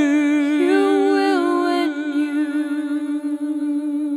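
Voices holding a long sung chord with vibrato. About two seconds in, the upper part stops and a single held note carries on.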